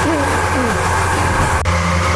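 Electric feed mixer running steadily with a loud low hum while it blends a batch of corn-based pig feed. A short voice is heard near the start, and a single sharp click comes near the end.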